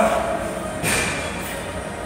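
Gym room noise with a brief voice at the very start. About a second in comes one sharp clink with a short ringing tone.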